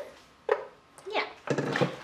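Mostly a child's speech: a few short sounds and a brief "yeah" with quiet gaps between them, and a small click about a second in.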